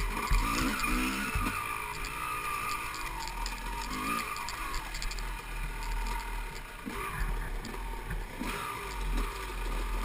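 Dirt bike engine revving up and down as it is ridden along a wooded trail, its pitch rising and falling over and over, with a low wind rumble on the microphone.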